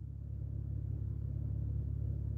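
Car engine idling, heard from inside the cabin as a low, steady rumble.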